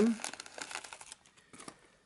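Cellophane wrapping crinkling as it is pulled off a cardboard perfume box, fading out after about a second.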